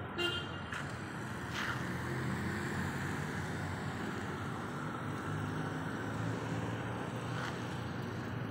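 Street traffic: nearby vehicle engines running steadily, with a few light clicks.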